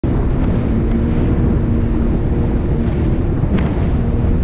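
Sea-Doo personal watercraft running at speed over choppy water, its engine drone half buried under heavy wind buffeting the microphone, with a single thud near the end.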